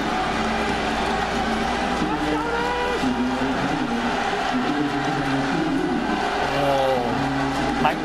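Stadium crowd noise at a baseball game: many voices yelling and chanting together in a steady, unbroken din, with held, shifting pitches and no single voice standing out.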